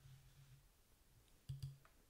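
Near silence, then a short double click about one and a half seconds in: a computer mouse button pressed and released.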